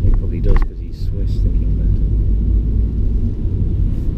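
Steady low rumble of a car's engine and tyres heard from inside the cabin while driving slowly. In the first second or so there are a few short clicks and a brief snatch of voice.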